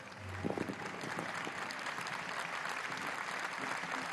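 Audience applauding, swelling in during the first second and then holding steady.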